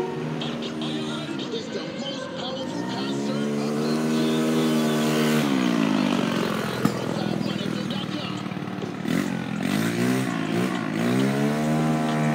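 Motor vehicle engines on a nearby street, their pitch rising as they accelerate, holding, then dropping about halfway through, and dipping and climbing again near the end. There is one sharp click a little past the middle.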